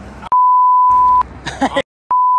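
A steady, single-pitch censor bleep dubbed over the audio. It runs for about a second, with all other sound cut out beneath it, then a man's voice comes back briefly near the end.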